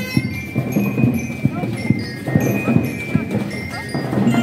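Marching band drums beating a busy, steady rhythm, with a high note held over most of it and a few short bell-like notes on top.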